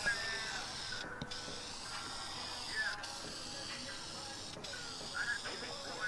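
Aerosol can of Dupli-Color vinyl and fabric spray paint hissing steadily as it is sprayed, with short breaks about a second in, near three seconds and near four and a half seconds.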